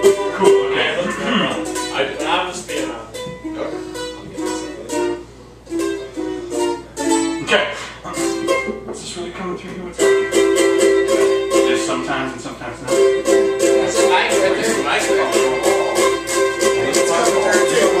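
Ukulele being played: single picked notes and light strums for the first half, then steadier, louder strumming from about ten seconds in.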